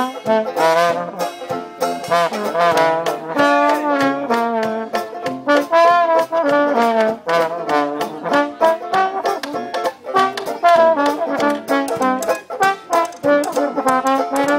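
Traditional jazz band playing live: cornet, trombone and reeds weave their melody lines together over a steady banjo-and-tuba beat.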